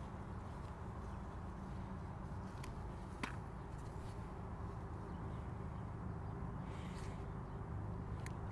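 Quiet outdoor background: a steady low rumble with a couple of faint clicks around the middle.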